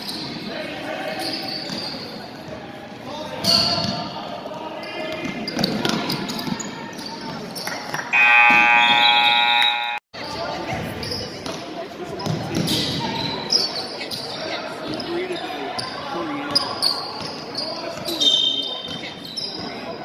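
Basketball game in a gym: a ball bouncing on the hardwood, sneakers squeaking and spectators' voices. Near the middle a loud scoreboard buzzer sounds steadily for about two seconds and cuts off abruptly.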